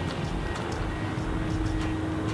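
Steady low background rumble with a faint continuous hum and no distinct events.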